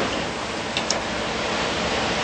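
Steady hiss of background room noise, with one faint tick a little under a second in.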